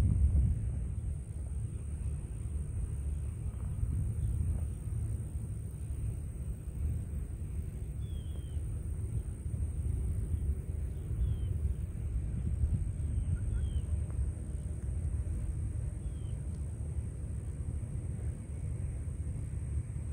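Wind rumbling on the microphone outdoors, with a few faint short bird chirps every few seconds and a faint steady high whine.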